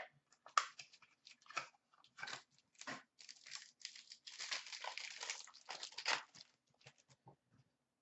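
Faint crinkling and tearing of a hockey card pack's wrapper as it is opened by hand: scattered crackles, with a denser rustle about four to five seconds in.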